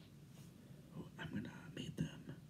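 Faint whispered speech close to a handheld microphone, starting about halfway in, over a low steady hum.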